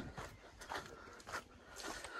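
Faint footsteps on a woodland dirt path, a soft step about every 0.7 s, under a faint high tone.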